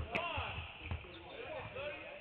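Several basketballs dribbled low on a hardwood gym floor, their bounces landing out of step with one another, mixed with short squeaks.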